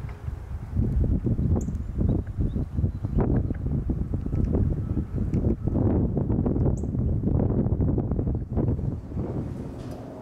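Wind buffeting the camera's microphone: a loud, gusty low rumble that swells and drops irregularly, fading near the end.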